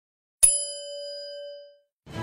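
A single notification-bell ding sound effect: one sharp strike about half a second in, ringing on in a few clear steady tones that fade away over about a second.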